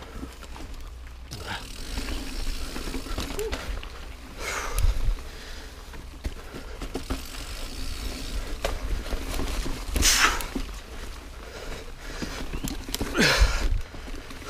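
Mountain bike rolling over dirt singletrack: steady tyre and trail rumble with wind on the camera microphone. A few short, louder noisy bursts come about 5, 10 and 13 seconds in.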